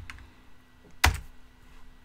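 A single computer keyboard keystroke about a second in: the Enter key pressed to run a command typed at the terminal.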